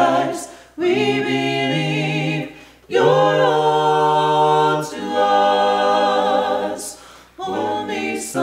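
A small mixed group of four voices, two men and two women, singing a worship song in harmony a cappella, with no instruments. Sustained phrases are broken by brief pauses for breath.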